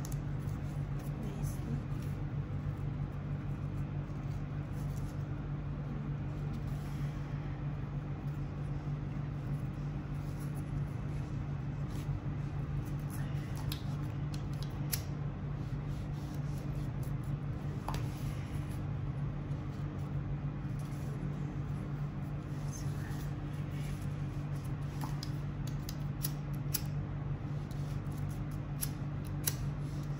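A steady low hum runs underneath. Over it come faint scattered clicks and rustles, more of them in the second half, from ribbon being handled and its ends being sealed with a lighter flame.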